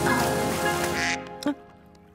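Cartoon background music over a rushing, spray-like hiss that cuts off abruptly about a second in. About half a second later a duck quacks once, short and sharp.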